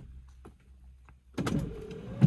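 Inside a car: a low steady hum, then about a second and a half in, a small electric motor starts with a steady, slightly wavering whine.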